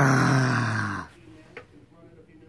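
A man's drawn-out wordless vocal sound, low and falling steadily in pitch, lasting about a second before it stops.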